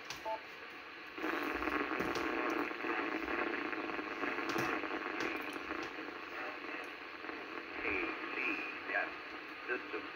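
Ham radio transceiver's speaker receiving a weak, noisy 10-metre FM transmission: a short beep, then from about a second in a steady hiss with faint, unintelligible speech in it.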